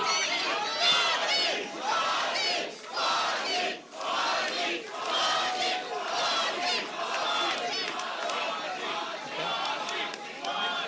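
A crowd of supporters cheering and shouting, many voices at once, with loud shouts standing out, loudest about a second in.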